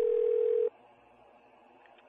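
Telephone dial tone, one steady tone that cuts off suddenly under a second in, followed by faint telephone-line hiss.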